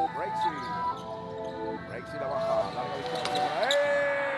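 A basketball bouncing on a hardwood court during live play, with music and voices underneath. The knocks come irregularly.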